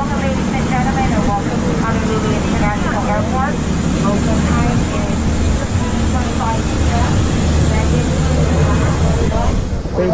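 Steady low hum inside a parked airliner's cabin, with indistinct voices of passengers filing off the plane.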